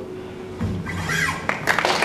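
The acoustic guitar's last notes ringing out and stopping about half a second in, then a low thump and the audience starting to clap and call out as the song ends, louder toward the end.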